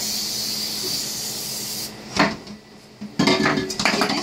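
An aerosol can spraying in a steady hiss that cuts off sharply about two seconds in. A metal clank follows, and then a pot being scrubbed with a brush in a metal sink, with metal clattering.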